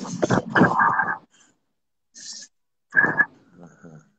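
A man's voice in short wordless sounds and low, creaky chuckling, heard over a live video call, with a pause of nearly two seconds in the middle.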